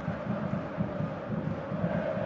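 Steady low background hum with a faint steady tone running through it.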